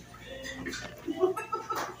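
Indistinct voices in a restaurant dining room, heard as short broken fragments from about half a second in.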